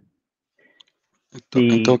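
A pause broken by a few faint clicks, then a man starts speaking about a second and a half in.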